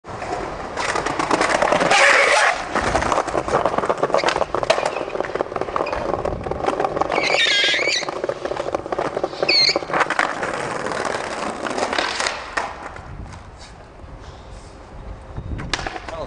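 Skateboard wheels rolling hard over rough street pavement, with sharp clacks and knocks of the board throughout; the rolling noise dies down in the last few seconds.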